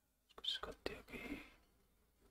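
A man muttering half-whispered under his breath for about a second, as when working through figures in his head.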